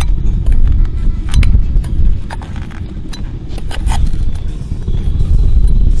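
Sharp metallic clinks of steel tongs and a spoon against a crucible of molten lava rock as it is held and tipped, over a heavy, steady low rumble.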